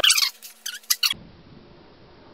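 A few short, high squeaks in the first second, then quiet room tone after a cut.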